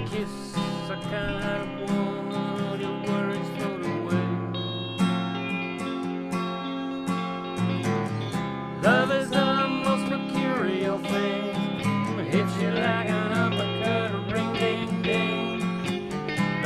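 Blues instrumental break: an electric guitar lead with bending, gliding notes over a steady guitar accompaniment. The lead gets busier and louder about nine seconds in.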